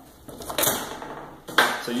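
Metal clatter as a turbocharger is handled and set down on a workbench: a lighter knock about half a second in, then a sharp, louder knock near the end.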